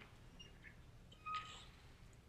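Very quiet lecture-hall room tone, with one brief, faint high-pitched sound about a second and a half in.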